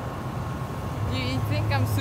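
Steady low hum of idling engines and traffic around a busy parking area, with faint voices talking from about a second in.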